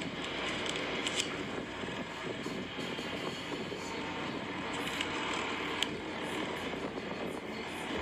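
A steady rushing noise with a few faint clicks.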